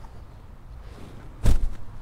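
A single short thump about one and a half seconds in, heavy at the low end and fading quickly, over faint steady background noise.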